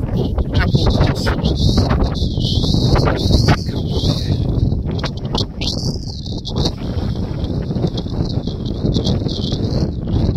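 Wind buffeting a phone's microphone: a loud, uneven rumble, with a few light handling knocks from the phone.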